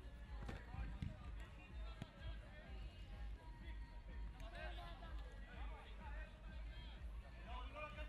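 Faint, distant voices of people calling out around an outdoor football pitch, with a few light knocks in the first couple of seconds and a low steady rumble underneath.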